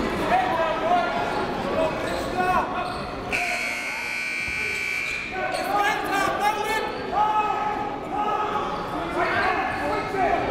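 Gym scoreboard buzzer sounding one steady, high tone for about two seconds, a few seconds in, signalling the end of a timeout. Voices echo in the gym around it.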